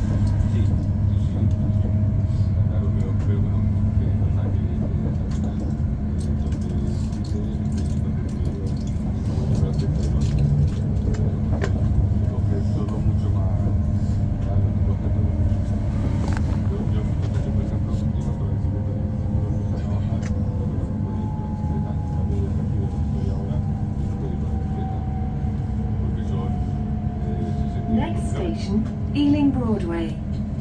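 Interior sound of an Elizabeth Line Class 345 electric train under way: a steady low rumble and hum of wheels on track. In the second half the whine of the electric traction motors falls slowly in pitch as the train slows for a station, with a brief squeal of gliding tones near the end.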